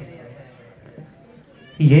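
A short lull with only faint background hum. Near the end a man starts singing an Urdu naat into a microphone through a PA, opening on a rising, held note.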